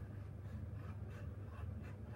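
Faint scissor snips and paper rustling as cardstock is cut and handled, over a low steady hum.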